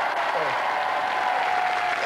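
Studio audience applauding steadily, with one long held tone beneath that falls slightly near the end.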